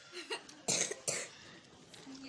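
A person coughing: two short coughs in quick succession, starting about two-thirds of a second in, the first the louder.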